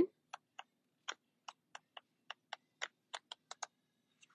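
Sheets of an A5 patterned paper pad flicked past one by one with the thumb, each sheet giving a short, quiet click, about thirteen in quick, uneven succession.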